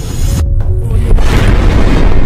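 Cinematic intro sound effect over music: a deep rumbling boom, with a loud rushing whoosh swelling in about a second in.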